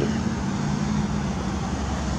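Steady street traffic noise from passing cars, with a low engine hum underneath.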